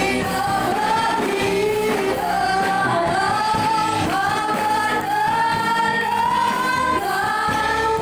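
Female vocalists singing a worship song through microphones and a PA, backed by a live band of electric guitars, keyboard and drums.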